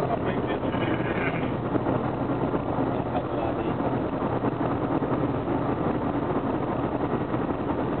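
Steady road noise and engine hum inside a car's cabin while driving on a highway.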